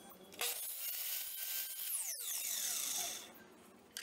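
Miter saw cutting a wooden piece, its whine falling in pitch as the blade slows, stopping about three seconds in.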